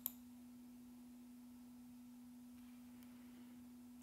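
Near silence: a faint steady low hum, with one short click just after the start.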